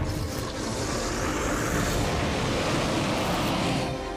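Steady rushing roar of a fire sound effect over a low rumble, its hiss easing off near the end.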